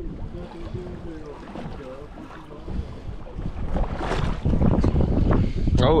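Wind buffeting the microphone on an open boat deck, a low rumble that grows louder about halfway through.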